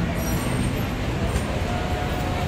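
Steady low rumble of road traffic and idling vehicles at a busy curbside, with faint voices of people around.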